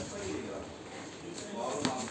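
Indistinct, low voices in a room, with a short sharp click near the end.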